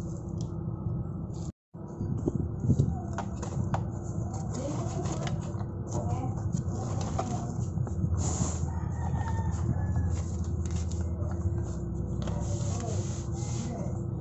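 Clicks and light knocks of plastic side-mirror parts being handled, over a steady low hum, with a rooster crowing in the background.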